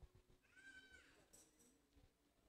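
Near silence: room tone, with one faint, short high-pitched call about half a second in.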